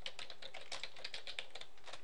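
Computer keyboard being typed, a quick run of key clicks that thins out near the end.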